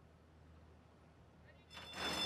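Near silence with a faint low hum, then, near the end, the starting gate's bell suddenly starts ringing loudly as the gate doors spring open at the start of a horse race.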